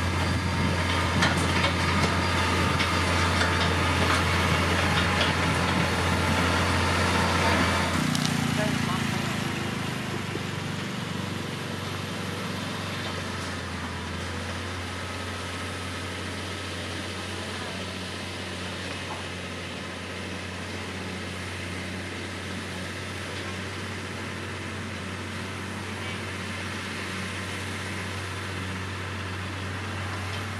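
Diesel engine of a LiuGong motor grader running while it works soil and gravel. It is louder and busier for the first eight seconds, then changes abruptly to a steadier, quieter running sound.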